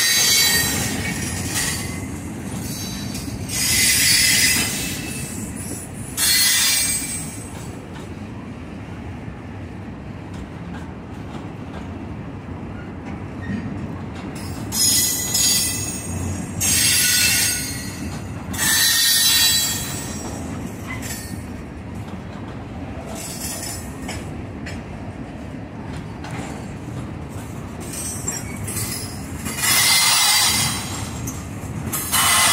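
Freight boxcars rolling over a wooden trestle: a steady rumble of steel wheels on rail, broken by several short, loud, high-pitched wheel squeals.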